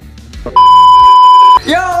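A loud, steady bleep tone added in editing, held for about a second starting about half a second in, the kind of tone used to censor a word. A man's voice says "Yo" just after it ends.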